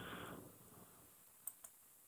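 Two sharp computer mouse clicks, about a fifth of a second apart, about one and a half seconds in.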